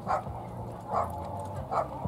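A dog barking: three short barks, each under a second apart.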